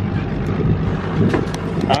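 A boat's engine running with a steady low hum, with wind noise on the microphone.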